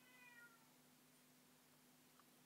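A cat's single short, faint meow, about half a second long near the start, falling slightly in pitch.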